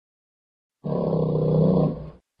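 Recorded bear roar: one steady, low call about a second and a half long, starting nearly a second in.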